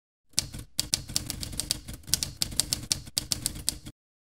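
Typewriter keys striking in a quick run of about fifteen keystrokes, four to five a second, then stopping abruptly.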